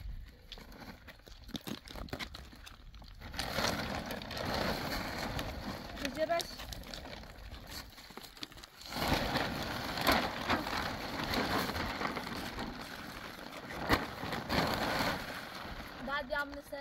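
Large plastic sheet rustling and crinkling as it is spread out and lifted over stony ground, in two long stretches, the second starting after a short lull about nine seconds in.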